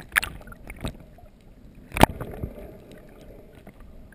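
Muffled underwater water noise picked up by a camera in a waterproof housing, with small clicks and rustles in the first second and one sharp knock about two seconds in.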